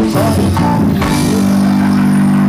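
Live band music through a stage sound system, with guitar and bass. About a second in it settles into a long held chord.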